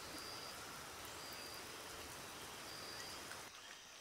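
Faint, steady rainforest ambience: an even hiss like light rain, with a few brief high chirps. It drops away shortly before the end.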